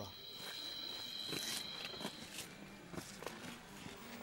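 Jungle ambience: a high, steady buzzing animal call lasting about two seconds, over a faint background hiss with a few soft clicks and knocks.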